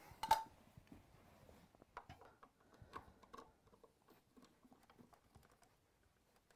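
Faint, irregular small clicks and taps of an insulated screwdriver working the faceplate screws of a double wall socket, with a single light knock just after the start.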